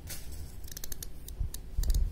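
Small carving knife cutting and scraping into pumpkin flesh and rind, a run of quick, crisp clicks, with a couple of low knocks in the second half.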